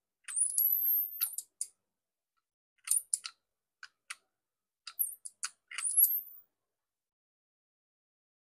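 Freshly repaired air-conditioner control board squealing on power-up: its switch-mode power supply gives thin, very high-pitched whistles that rise in pitch, with scattered clicks, for a few seconds before it settles. The technician takes the noise for heavy capacitor charging.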